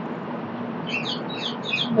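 Bird chirping: a quick run of short, high notes starting about halfway through, over a steady background hiss.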